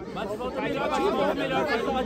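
Several people talking over one another at once.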